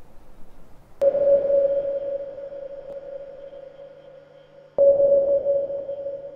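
Electronic sound design: a steady mid-pitched tone struck sharply about a second in that slowly fades, then struck again near the end.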